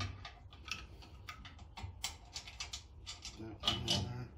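Light, irregular clicks and taps of small mounting hardware (bolts, flat washers and lock washers) being handled and fitted by hand as a gas regulator is held against a generator frame.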